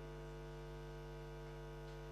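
Quiet, steady electrical mains hum with a buzz of many evenly spaced overtones, unchanging throughout.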